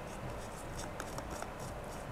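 Faint scratchy rubbing with a few small light clicks: hands working an Ethernet cable's plastic cable gland into the housing of an outdoor PoE extender.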